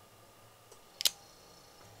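One sharp plastic click about a second in, as the Belial 3 Beyblade Burst layer is pried open by hand.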